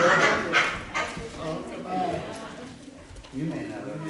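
Indistinct voices of people talking, starting with a short burst of overlapping chatter and then a few scattered, quieter phrases.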